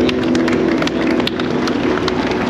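A crowd clapping: scattered, irregular handclaps over a steady low hum.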